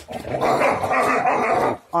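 A dog growling: a rough, unpitched rumble that lasts about a second and a half.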